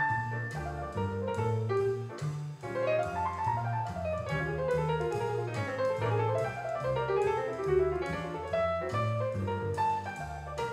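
Grand piano being played: sustained low bass notes changing every second or so under a moving melody line in the middle and upper register.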